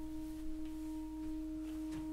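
A steady, pure electronic tone held on one pitch, with fainter overtones, over a soft hiss: a sustained sine-like drone in a horror film's soundtrack.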